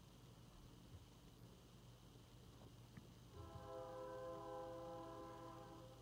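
Near silence with a low steady hum. About halfway in, a faint horn-like tone of several steady pitches sounds together, holds for about two and a half seconds, then stops.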